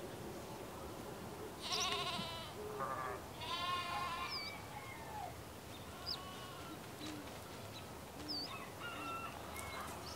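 Bleating farm animal: three quavering calls in quick succession about two seconds in, over a steady background hiss, followed by a few short high chirps.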